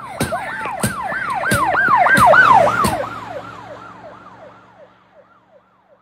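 Siren going in a fast repeating up-and-down yelp, about three sweeps a second, building to its loudest partway through and then fading away. A few sharp clicks come in the first three seconds.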